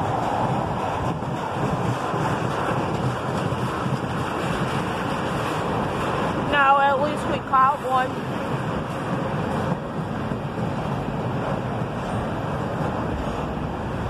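Freight train rolling past below, a steady rushing rumble of steel wheels on the rails. A person's voice is heard briefly about halfway through.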